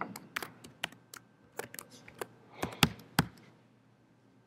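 Typing on a computer keyboard: an irregular run of quick keystrokes, with two louder strokes near the end.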